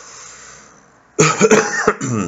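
A man coughing, a short run of a few coughs starting a little over a second in.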